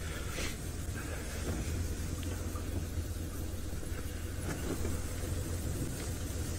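Open safari game-drive vehicle's engine running steadily at low revs, a constant low hum.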